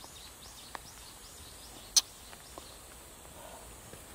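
Quiet outdoor woodland ambience with faint, short, high chirps, and one sharp click about two seconds in.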